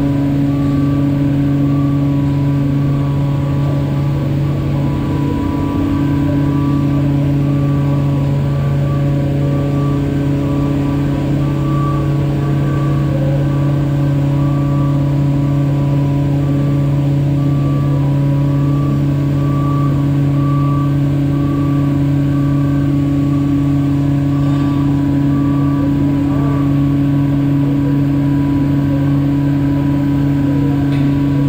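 A motor droning steadily at one unchanging pitch, with no revving or pauses.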